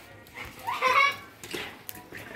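A child's short, high-pitched wordless call, rising in and loudest about a second in, then fading.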